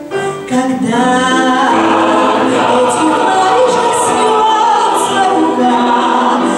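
Mixed academic choir singing in full, sustained harmony. The level dips briefly at the start, and the voices are back in full within about a second.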